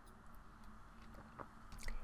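Quiet room tone with a couple of faint, short clicks in the second half.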